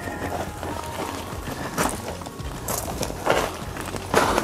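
Potting soil and roots scraping and rustling against the inside of a plastic flower pot laid on its side, a few short scrapes as a root-bound lemon tree is worked loose, with quiet background music underneath.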